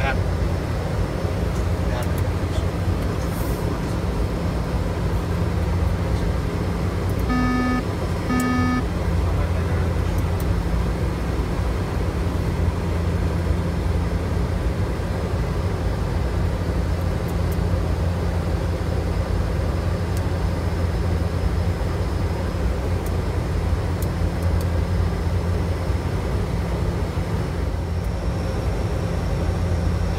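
Bombardier Dash 8 Q400's turboprop engines and six-bladed propellers giving a steady, loud low drone in the cockpit on approach. About a third of the way in, two short electronic cockpit tones sound about a second apart.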